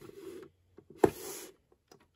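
Light handling noises of a diecast model car being turned in the hand, with one sharp click about a second in followed by a brief rustle.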